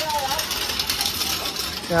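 Busy street-market ambience: background voices of passers-by mixed with many quick, light clinks and rattles. The narrator's voice comes in at the very end.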